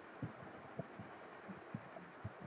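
A few faint, dull thuds at uneven intervals, about six in two seconds, over quiet room tone.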